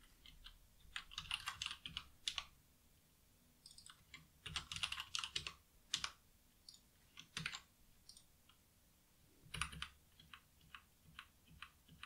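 Typing on a computer keyboard: short runs of keystrokes with pauses between them, thinning to single taps near the end.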